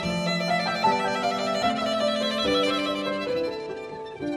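Violin playing a slow classical melody in sustained bowed notes, changing pitch every half second to a second.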